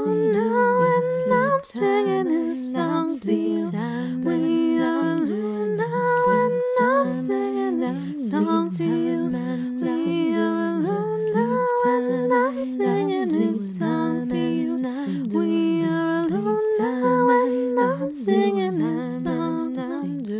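Wordless humming in layered a cappella vocal harmonies: several voices hold sustained chords and shift together from chord to chord.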